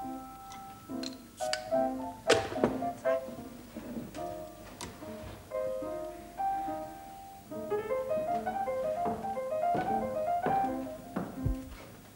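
A slow piano melody of single notes playing, with several sharp knocks of glass and bottle set down on the bar counter, the loudest about two seconds in.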